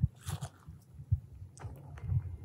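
A series of soft, irregular low thumps, with a brief rustle near the start.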